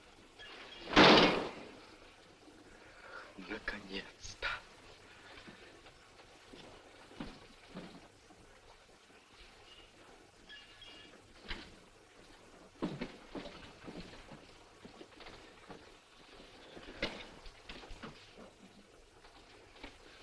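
Men's voices in short, scattered bursts and low murmurs, the loudest a sudden outburst about a second in.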